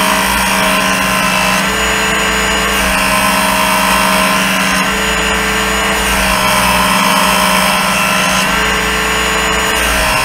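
Work Sharp electric belt knife sharpener running, its motor and abrasive belt grinding a steel blade drawn through the guide. The pitch steps up and down every second or two as the blade makes repeated passes.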